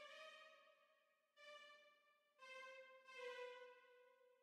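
Faint sampled violins from the AREIA string library in Kontakt play a slow line of held notes. Each note lasts about a second and the line steps slightly downward, with brief silences between notes.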